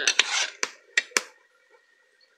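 Metal ladle scraping and knocking in a large aluminium pot of thick tomato sauce: a short scrape, then four sharp clinks within the first second and a half.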